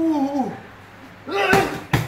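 Strikes landing on a leather Thai kick pad, ending in a sharp slap as a kick lands, with the pad-holder's short shouted calls at the start and about a second and a half in.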